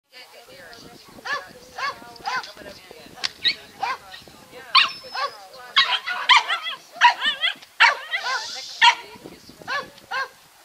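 A dog barking in a long series of short, high barks, about one or two a second, coming faster about two thirds of the way through.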